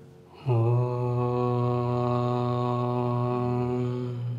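A man's voice chanting a long, low, steady "Om", starting suddenly about half a second in and held through the rest, the first of the three opening Om chants of the practice. Faint background music underneath.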